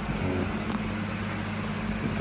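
Steady low hum, with a brief faint voice sound shortly after the start.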